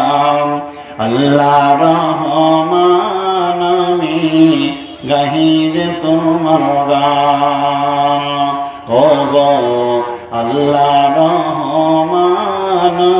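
A man's solo voice singing a slow, drawn-out devotional chant into a microphone, holding long notes that bend gently in pitch, with short breaths about a second in, near the middle and near the end.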